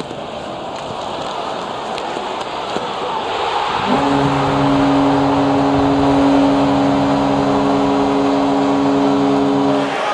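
NHL arena crowd cheering and growing louder as a goal is scored, then the arena goal horn sounds about four seconds in, one long steady blast over the cheering that stops abruptly near the end.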